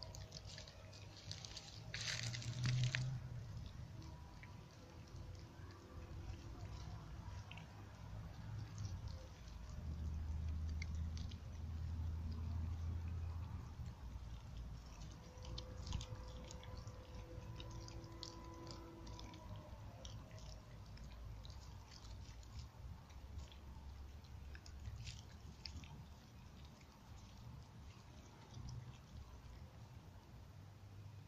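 A small dog chewing and crunching a fish, with scattered wet clicks and crunches throughout. A low rumble runs in the background.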